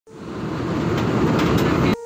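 Intro sound effect: a dense rushing noise that swells in over the first half second, holds steady with a faint hum under it, and cuts off abruptly just before the end.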